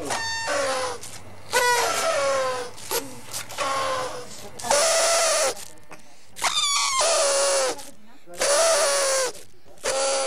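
Paper party blowouts (New Year's party horns) tooted in a series of about six blasts, each about a second long and held at a steady buzzy pitch, several with a short sliding start.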